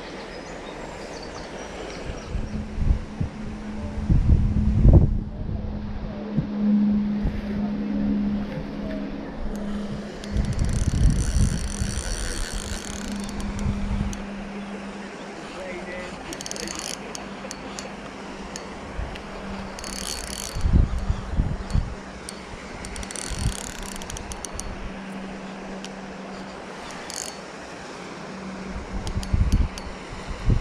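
Spinning fishing reel worked by hand, its mechanism clicking and whirring in several short spells over a steady low hum. Loud low buffeting on the microphone comes and goes.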